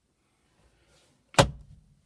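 Centre-console armrest lid being shut: a single solid plastic thunk about a second and a half in, after faint handling rustle.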